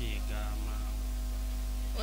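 Steady electrical mains hum from the microphone and sound system, with faint voices underneath.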